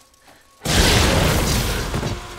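A sudden, very loud boom about half a second in, with a heavy low rumble and a wide hiss that stays loud and starts to fade near the end.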